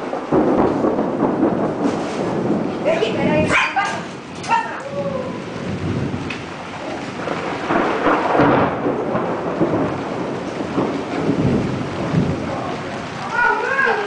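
Thunderstorm noise: a dense rush with low rumbling, from the storm cell around a funnel cloud. A dog barks a few short times about three to five seconds in.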